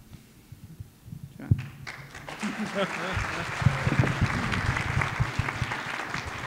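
An audience applauding, starting about two seconds in and building, with some laughter mixed in.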